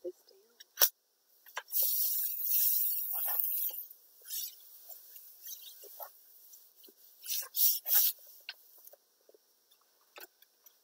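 Sheet of copy paper being pressed and rubbed by hand onto ink-covered plastic wrap: a sharp tap about a second in, a couple of seconds of dense rustling as the paper is rubbed down, then scattered scratching and a few short crinkles of paper and plastic wrap later on.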